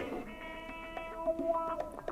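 Plucked guitar playing a few sustained, ringing notes as instrumental backing between spoken lines.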